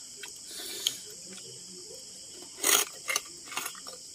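Chewing and crunching on crispy fried pork rind (chicharon), with a few short crunches from about two and a half to three and a half seconds in. A steady chirring of crickets runs underneath.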